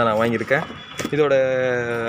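A man talking, drawing out one long syllable in the second half, with a short click about a second in.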